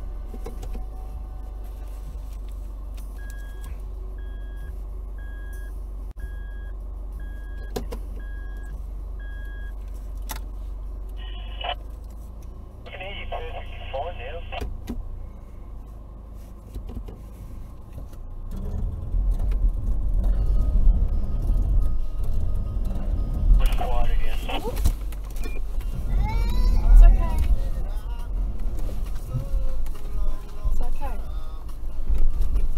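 Toyota Prado KDJ150's 3.0-litre four-cylinder turbo-diesel idling, with a cabin warning chime repeating about once a second for several seconds. About eighteen seconds in, the engine is revved hard and stays loud and uneven as the four-wheel drive, in low range with the centre differential locked, pulls into soft sand.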